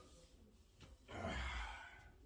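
A man's heavy sigh: one long breath out, starting about a second in and lasting most of a second.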